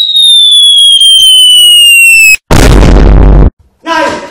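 Cartoon-style falling-bomb sound effect: a long whistle sliding steadily down in pitch, then a loud explosion about two and a half seconds in that cuts off abruptly after about a second.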